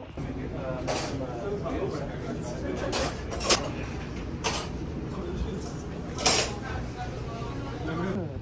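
Busy shop ambience: indistinct chatter of people, with several sharp clinks and knocks scattered through it.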